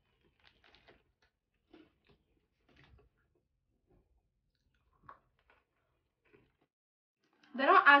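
Faint, scattered crunches of thin salted pretzel sticks with a peanut filling being bitten and chewed. A voice starts speaking near the end.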